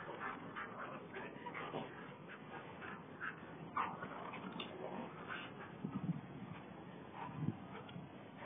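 Faint sounds of dogs wrestling and playing over a toy on grass: low scuffling with scattered short noises and a few slightly louder moments in the second half.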